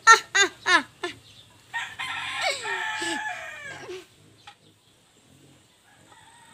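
A girl's acted villain laugh, a quick run of high 'ha-ha-ha's in the first second. Then a rooster crows for about two seconds.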